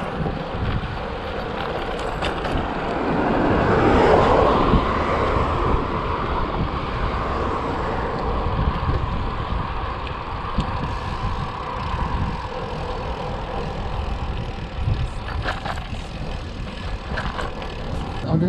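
Wind rushing over the camera microphone and tyre noise from a road bike being ridden on asphalt, a steady noisy rush with low buffeting, swelling somewhat louder about four seconds in.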